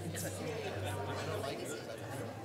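Indistinct chatter of a congregation talking quietly among themselves, over a steady low electrical hum.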